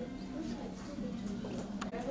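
Indistinct voices over a steady low room hum, with a few faint high squeaks and a sharp click shortly before the end.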